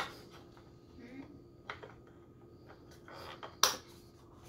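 Quiet handling of a plastic drone hull, with one sharp click about three and a half seconds in as a part snaps back into place in its housing.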